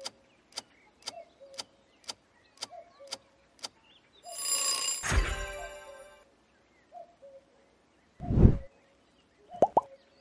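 Quiz-game sound effects: a countdown timer ticking about twice a second, then a swelling whoosh into a bright bell-like chime as the answer is revealed. About eight seconds in comes a short low whoosh, and near the end two quick rising bloops.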